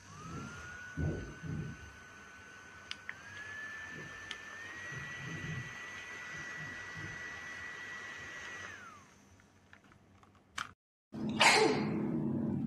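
Small motor of a portable USB rechargeable neck fan whining as it spins up, then stepping higher in pitch twice, each time with a click of its button, as it goes up through its speed settings. Near the end it is switched off: the whine falls in pitch and stops.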